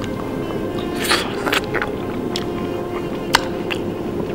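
Steady background music, with a few short clicks and smacks of a man eating beshbarmak with his hands, about a second in and again near the end.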